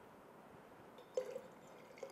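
A single short splash of hot water moving in the steel cup of a vacuum flask, about a second in, over quiet room tone.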